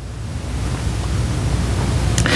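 A steady rushing noise with a low rumble, growing slightly louder, picked up by a headset microphone.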